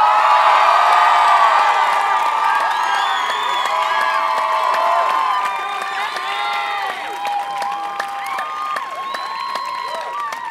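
A large crowd cheering, with many overlapping shouts and whoops over clapping. It is loudest at the start and gradually dies down.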